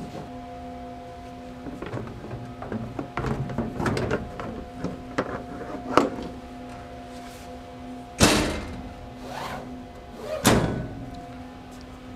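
Steady multi-tone hum of idling book-binding machinery, with scattered clicks and knocks of hands working inside the trimmer, and two loud thuds about eight and ten and a half seconds in, like a panel or door on the machine being knocked shut.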